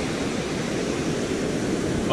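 Ocean surf breaking and washing up the beach, a steady rush of noise.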